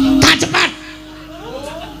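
A voice holds a long syllable that breaks off just after the start, followed by a few short, sharp hissing sounds. Then comes a quieter, slowly rising voice sound near the end.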